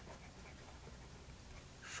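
Faint sound of a Lamy 2000 fountain pen's gold medium nib moving across paper as a word is written.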